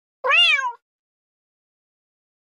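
A single cat meow, about half a second long, rising and then falling in pitch.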